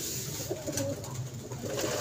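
Domestic pigeons cooing softly, with a few faint ticks.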